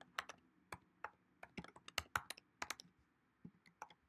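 Faint typing on a computer keyboard: a quick, uneven run of key clicks in small clusters, with a last few taps near the end.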